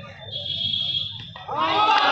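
A single steady high-pitched whistle held for about a second, over low background noise, then loud shouting near the end.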